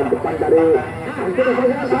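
A man's voice humming and drawing out syllables, the held pitch wavering up and down.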